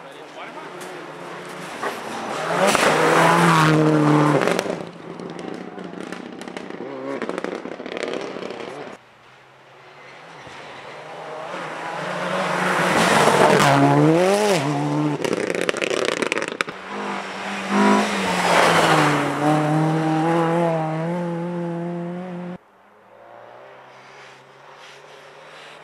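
Subaru Impreza rally cars on a snowy stage driving flat out past the spot, one pass after another. Their turbocharged flat-four engines rev hard, the pitch sweeping up and dropping with gear changes and lifts as each car approaches and goes by.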